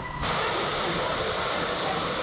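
Steady rushing wind noise on the microphone as the spinning Dumbo ride vehicle circles the hub, starting abruptly just after the start.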